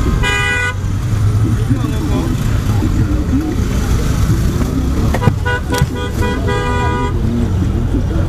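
Car horns honking over a steady rumble of traffic: one short blast right at the start, then several more toots between about five and seven seconds in.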